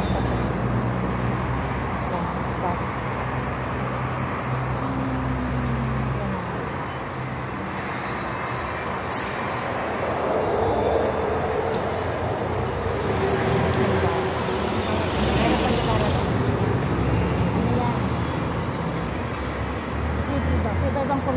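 Street traffic with diesel city buses running close by at a bus stop, a bus engine running steadily low down. Bursts of hiss in the second half, typical of a bus's air brakes as it pulls in.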